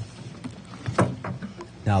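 Water lapping and sloshing against the side of an aluminum boat as a walleye is lowered into the river, with two short sharp sounds, one right at the start and one about a second in. A man's voice begins near the end.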